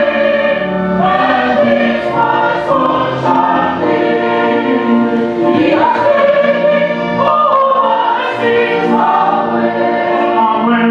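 A church choir singing, many voices holding notes together that change every second or so.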